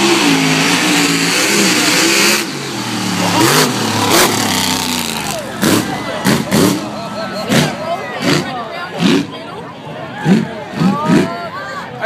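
Mud-drag truck engine at full throttle, its pitch wavering, dropping away suddenly about two seconds in; spectators' voices talking fill the rest.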